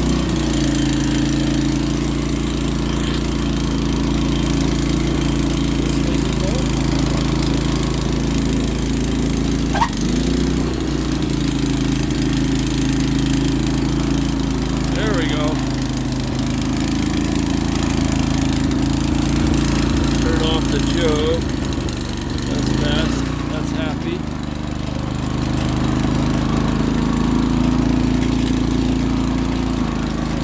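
Honda HS80 snowblower's small engine running steadily after its carburetor was cleaned, with a sharp click about ten seconds in. The engine speed sags briefly and picks up again a little past the twenty-second mark.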